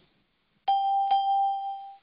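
A single bell-like ding about two-thirds of a second in, ringing on at one steady pitch and slowly fading, with a faint click partway through; it stops abruptly near the end.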